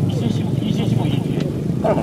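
A man's voice amplified through a microphone and horn loudspeakers, over a steady low hum.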